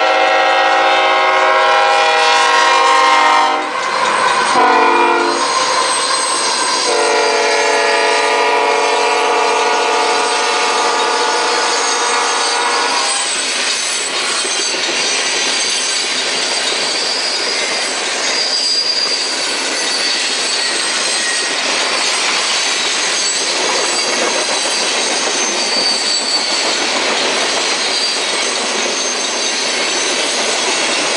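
Freight locomotive horn sounding a chord: one blast ending about three and a half seconds in, a short blast, then a final long blast that stops about 13 seconds in, the close of a grade-crossing horn signal. After that comes the steady loud rumble and clatter of loaded tank cars rolling past on the rails.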